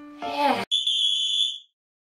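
A single steady, high-pitched electronic beep, a censor-style bleep sound effect, lasting about a second and then cutting off abruptly.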